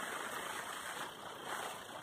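Steady, even background hiss of room tone, with no distinct sounds in it.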